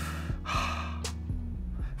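A man's quick breath in, then a longer sigh about half a second in, over a background trap instrumental.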